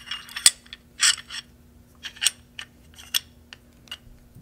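Steel parts of a Czech Sa vz. 26 submachine gun being handled: the barrel sliding into the telescoping bolt and receiver, giving a string of light metal clicks and a brief scrape. The sharpest click comes about half a second in.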